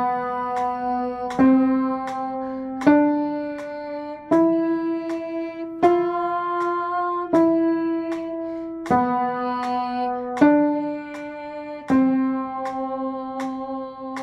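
Upright piano played slowly, one note or chord struck about every second and a half and held until the next, in a deliberate practice tempo.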